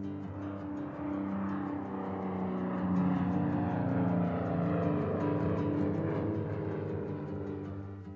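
Single-engine propeller aircraft flying past, a steady engine drone that swells over the first few seconds and fades toward the end.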